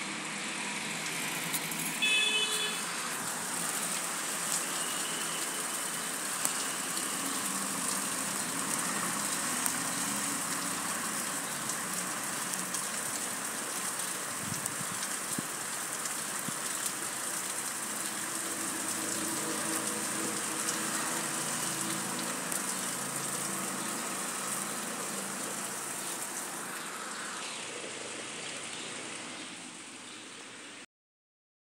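Steady heavy rain falling, an even hiss with no let-up. A brief high-pitched tone sounds about two seconds in.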